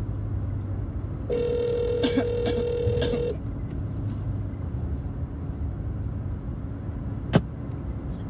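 Ringback tone of an outgoing call heard through a phone's speaker: one ring about two seconds long, over a low steady hum. A sharp click comes near the end as the line connects.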